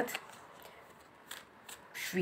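Deck of tarot cards being shuffled by hand, overhand: faint rustling of the cards, with a few short snaps of cards in the second half.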